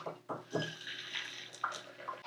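Kitchen faucet running into a small stainless-steel measuring cup, filling it with water. A couple of light knocks come right at the start, then the stream runs steadily.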